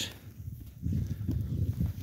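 A black Percheron mare stepping about close by in snow. A low sound from the horse starts about half a second in and lasts over a second.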